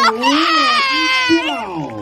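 A woman's high voice held on long, wavering notes, then sliding down in pitch and fading near the end.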